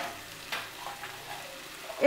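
Potato and raw banana pieces in a spiced mustard-oil masala sizzling softly in a non-stick pan. There are two light knocks of the wooden spatula against the pan in the first half-second.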